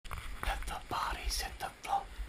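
Quiet, partly whispered speech, with a low rumble underneath.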